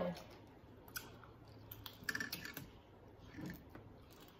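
Chewing of tanghulu, candied strawberries in a hard sugar shell: the glassy coating cracks in a quick, irregular run of crisp clicks, busiest about two seconds in.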